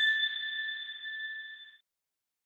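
A bright 'ding' chime sound effect for a logo sparkle: one steady high ringing tone that fades away and is gone a little before two seconds in.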